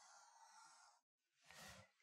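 Near silence: faint room tone, with a soft intake of breath near the end.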